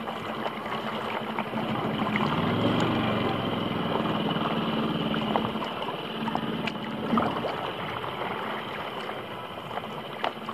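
Water lapping and splashing against a paddle board close to the microphone, with small clicks throughout. A low motor hum from a boat swells in the middle and fades again.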